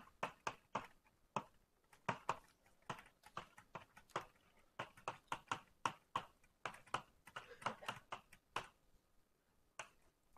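Faint, irregular light taps and clicks of someone writing, a few a second, with a pause of about a second near the end.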